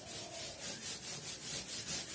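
A chalkboard being wiped clean, an eraser scrubbing back and forth across the board in rapid even strokes, about four a second.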